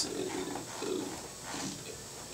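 A person's soft, low vocal sounds in a small room, much fainter than the talk around them.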